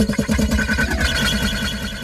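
Sound effect in a TV station break: a fast run of low beats, about ten a second, with a pitch sliding down about a second in, then fading.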